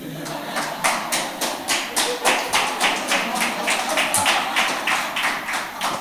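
Rhythmic hand clapping, about four to five claps a second, with crowd voices underneath.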